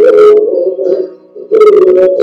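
The soloed reverb of a sung vocal playing back: two sung phrases, each opening with a hiss of sibilance, the second about one and a half seconds in. A mid-range EQ band is boosted on the reverb, leaving it a bit boxy.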